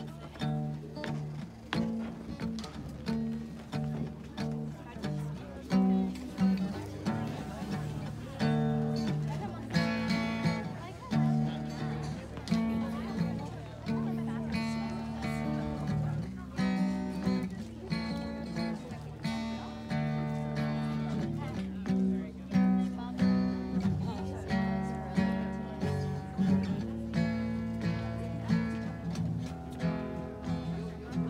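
Acoustic guitar strummed in a steady rhythm, with a man singing along.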